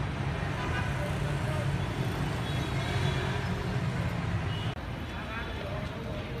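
Street ambience: a steady low traffic rumble with the voices of a crowd talking in the distance. A brief dropout near the end, where the sound cuts to another shot.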